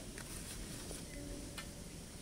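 Quiet outdoor background: a steady low hiss with a few faint ticks.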